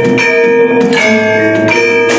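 Javanese gamelan ensemble playing: bronze saron metallophones and bonang kettle gongs struck with mallets, each note ringing on into the next in a steady beat.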